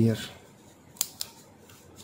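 Two sharp clicks about a fifth of a second apart, from a hand tool knocking against the plastic bobbin of a small ferrite SMPS transformer as it is handled.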